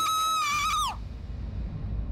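A high, held wail with a rich, ringing tone that falls away in pitch about a second in, followed by a low rumble.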